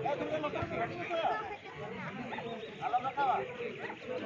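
Spectators chattering and calling out, with raised voices about a second in and again around three seconds in.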